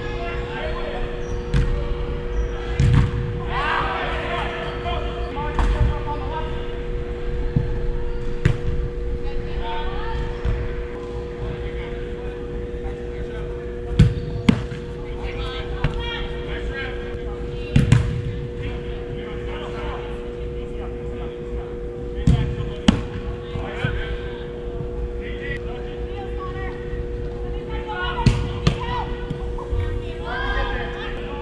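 Soccer ball being kicked and struck on an indoor turf pitch: scattered sharp thuds, the loudest a few in the second half, with players' shouts in between. A steady two-tone hum runs underneath.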